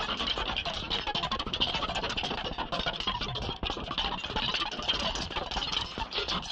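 Electronic sound-design track played on a heavily modulated Mimic synth in Reason: a dense, unbroken stream of rapid clicks and short noisy hits, brightest high up, with no steady melody.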